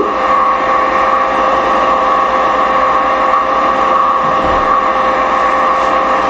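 A loud, steady electrical hum and hiss with two high, held tones.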